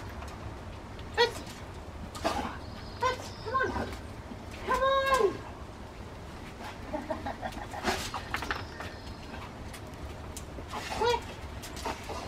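Rottweiler giving short, high-pitched excited barks and yips at intervals while working at heel, with one longer drawn-out yelp that rises and falls about five seconds in.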